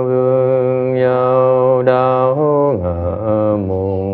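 Buddhist liturgical chanting in Vietnamese: a voice drawing out long, held syllables on a steady pitch, then sliding down to a lower held note about two and a half seconds in.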